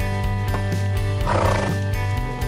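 Background music with a steady beat, with a short horse whinny laid over it a little past the middle.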